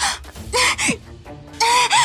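A young woman's high-pitched cries of distress as she struggles against a man grabbing her: two short cries about half a second in, then a longer one near the end. Quiet dramatic background music runs underneath.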